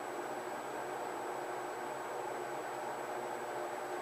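Steady low background hiss of room noise, with no distinct event.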